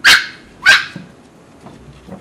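Golden retriever puppy giving two short, loud yaps about two-thirds of a second apart, each falling in pitch.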